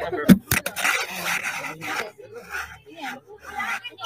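Handling noise on a hand-held phone's microphone: two sharp knocks under half a second in, then rough rubbing and scraping against it, with faint voices underneath.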